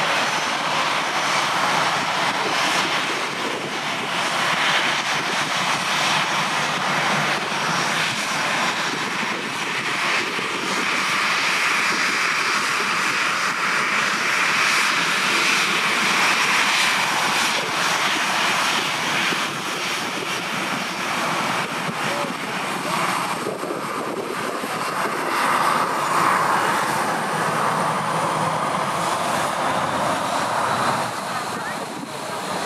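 Boeing 737 jet engines running loud and steady as the airliner taxis and turns close by, with a faint high whine rising near the end as the engines swing toward the spectators.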